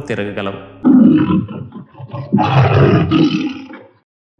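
Tiger roaring twice: a short roar about a second in, then a longer one that fades away near the end.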